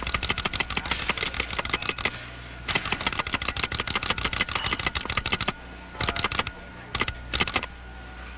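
Rapid mechanical clacking in bursts: two long runs of quick clicks with a short break between them, then two brief runs near the end, over a steady low hum.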